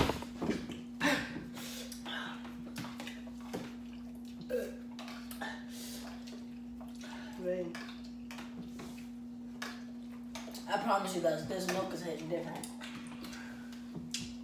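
Eating and drinking at a table: utensils tap and click against plastic bowls and cups in scattered small knocks over a steady low hum. A brief, murmured voice comes in about eleven seconds in.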